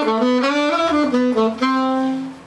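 Unaccompanied alto saxophone playing a quick phrase of short notes stepping up and down in pitch, then settling onto a held note near the end.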